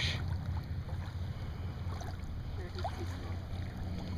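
Steady low wind rumble on the microphone over shallow water, with a few faint small water sounds as a hooked fish is drawn in near the surface.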